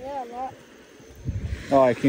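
Speech: a short spoken exchange, with a brief voiced reply at the start and a spoken "no" near the end, over faint steady background noise.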